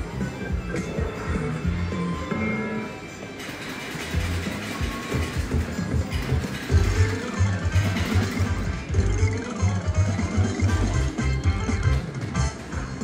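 Slot machine game music and sound effects during a bonus round: a repeating low beat that gets stronger about halfway through, with sweeping tones sliding up and down under it.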